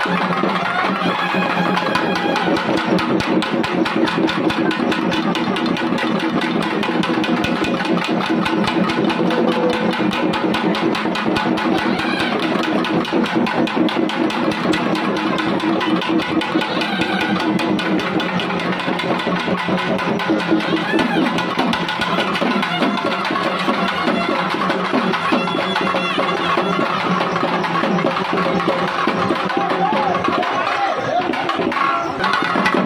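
Tamil folk festival drumming: shoulder-slung barrel drums beaten in a fast, continuous rhythm, with steady held tones sounding under the strokes.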